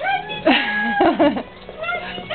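Chihuahua making high-pitched whining cries that bend up and down in pitch while play-fighting with another dog. The loudest cries come about half a second to a second and a half in, and a new one starts near the end.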